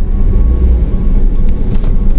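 Car moving slowly, with a loud, steady low rumble of engine and road noise.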